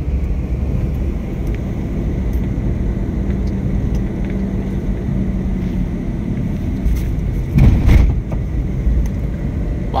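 Car moving on a road, heard from inside the cabin: the engine and tyres make a steady low rumble, with one brief louder thud a little under eight seconds in.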